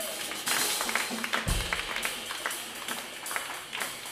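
Live jazz band playing softly, the drum kit to the fore: cymbal and hi-hat taps with a bass drum hit about a second and a half in.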